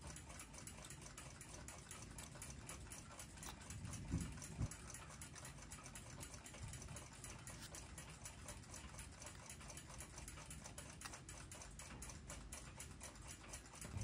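Faint, rapid, even clock ticking, with two soft knocks of the clock movement being handled about four seconds in.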